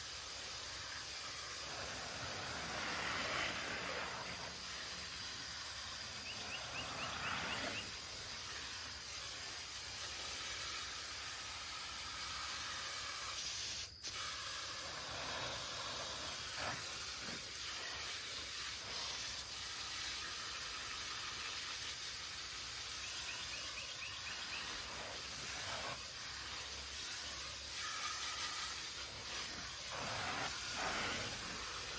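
Garden hose spray nozzle hissing as water soaks grass clippings packed into a plastic trash can. The spray swells and eases as it is moved about, with a brief break about halfway.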